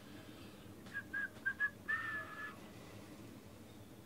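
A person whistling a few notes: four quick short notes, then one longer held note that dips slightly in pitch.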